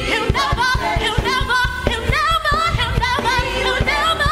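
A gospel praise team of several singers, men and women, singing together into microphones over music with a steady beat.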